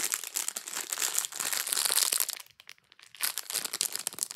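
Crinkly plastic packaging crackling as it is handled and pulled at. There is a dense run for about two and a half seconds, a brief pause, then more crinkling near the end.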